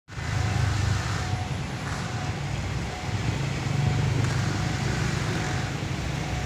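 State Railway of Thailand NKF-class diesel railcar's diesel engine running steadily while the train stands at the platform, a low, even drone.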